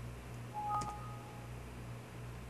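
A short two-tone electronic beep, like a telephone keypad tone, lasting about half a second near the middle, over a steady low background hum.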